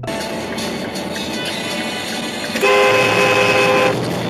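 Traffic and road noise picked up by a dashcam, then a car horn sounds in one steady blast of about a second near the end.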